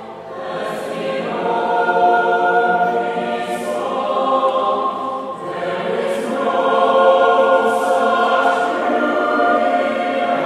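A small mixed choir of young men's and women's voices singing a slow piece in long, sustained phrases, each voice recorded separately and mixed together as a virtual choir. The sound dips briefly at the start, then swells again.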